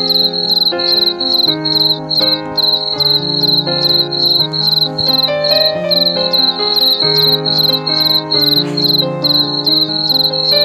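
Cricket chirping in a steady, even rhythm of about three chirps a second, over soft music of slowly changing sustained chords.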